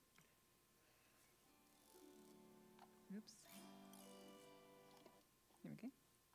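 An autoharp playing faint, ringing chords from about two seconds in until about five seconds, with a couple of brief soft noises.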